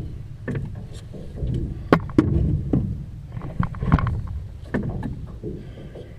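Handling noises in a small boat as a crappie is held and unhooked: about a dozen scattered knocks and clicks, the loudest about two and four seconds in, over a low steady rumble.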